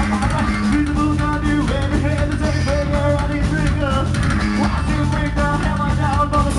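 Loud live heavy rock band playing: distorted electric guitar over bass and a drum kit, with held notes.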